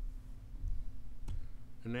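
A single sharp click at the computer, about one and a half seconds in, as the SketchUp tool is switched, over a low steady hum.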